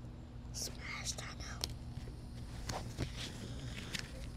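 Small paper cards being flicked one by one through a child's hands, close to a clip-on mic: soft rustling near the start, then a few light clicks as cards snap past.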